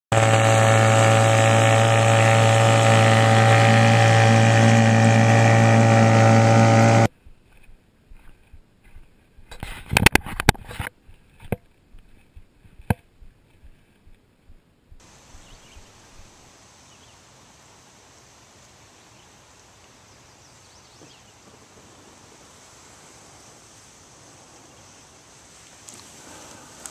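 A motor running at a steady speed, loud and unchanging, cutting off abruptly after about seven seconds. Then come a few scattered sharp knocks and clicks, and a faint steady hiss.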